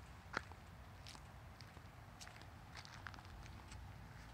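Faint footsteps and handling noise from a camera carried on foot, a scatter of soft ticks with one sharper click about half a second in.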